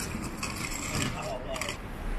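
Busy outdoor ambience of a station forecourt: steady traffic rumble and passers-by talking, with a few short clicks and rattles.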